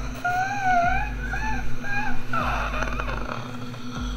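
A high, wavering whimpering cry in a few short phrases, then a rough breathy gasp, over a low steady hum.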